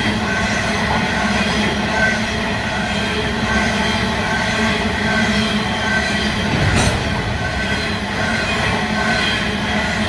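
Coal train hopper wagons rolling past on steel wheels: a steady rumble of wheels on rail with high ringing tones running through it, and one sharper clunk about seven seconds in.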